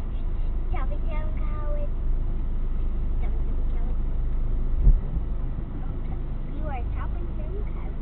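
Steady low rumble of a car's engine and running gear heard from inside the cabin as it creeps forward in queuing traffic, with a single low thump about five seconds in. Short bits of a voice come twice, about a second in and near the end.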